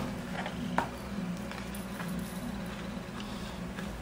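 Hand-stitching handling noise as a thread is fastened off in a paper book: a sharp tap right at the start and another just under a second in, then faint scratchy rustles of thread and paper. A steady low hum runs underneath.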